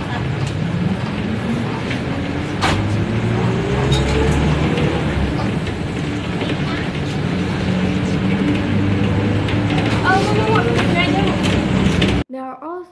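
Cabin noise inside a moving city bus: the engine and drivetrain run steadily, with a whine that rises in pitch over the first four seconds or so as the bus gathers speed, then holds level. Voices are heard briefly near the end.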